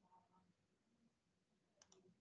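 Near silence, with two faint clicks in quick succession near the end.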